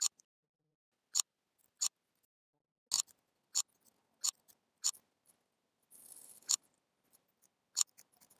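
About nine sharp, isolated clicks of computer keys and a mouse during text editing, spaced irregularly half a second to a second apart. A soft brief rustle comes just before one click about two thirds of the way in.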